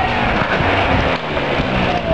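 Small motor scooter engine running as the scooter rides up toward the listener.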